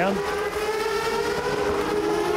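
GP2 race car V8 engine running at steady high revs: a sustained, slightly rising note.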